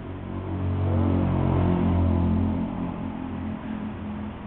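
A motorcycle engine revving: it rises about half a second in, holds loud for about two seconds, then drops back near the end.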